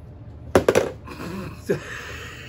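A handheld butane lighter: about three sharp clicks of the igniter, then a steady hiss of escaping gas.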